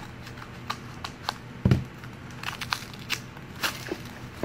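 Small foil toy blind bag crinkling and crackling as it is handled and opened, in scattered short crackles, with one dull bump a little before the middle.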